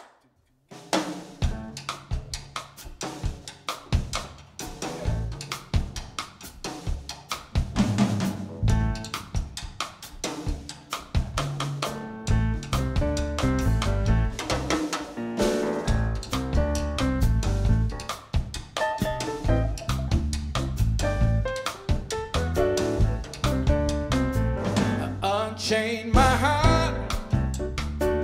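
Jazz band's instrumental intro: acoustic grand piano and drum kit playing, with the electric bass guitar coming in strongly about halfway through.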